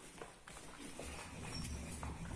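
Footsteps on a hard tiled floor, a few short clicking steps, with a low rumble joining about halfway through.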